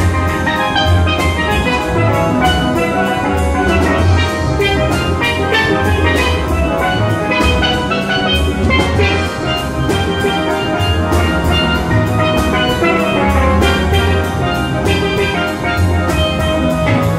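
A steel band playing live: many steel pans ringing out chords and melody over low bass pans, with a drum kit keeping a steady beat.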